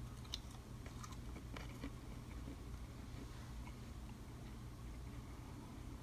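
Faint crunching and chewing of a decades-old stick of 1987 Topps wax-pack bubble gum, heard as scattered small clicks and crackles.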